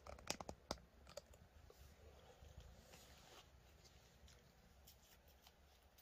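Near silence: room tone, with a few faint, sharp clicks in the first second or so.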